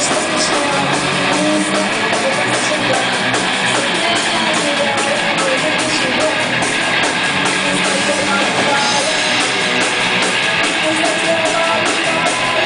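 A punk-metal rock band playing live at full volume: distorted electric guitars and bass over a drum kit, with fast, steady cymbal and drum hits.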